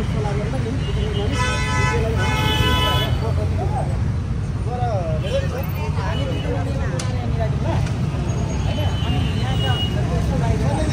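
Steady rumble of street traffic with voices murmuring over it; a vehicle horn sounds twice in quick succession, the two blasts about one and a half and two and a half seconds in.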